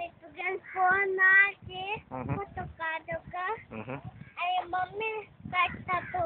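A young child singing in a high voice close to the microphone, with a few notes held briefly about a second in.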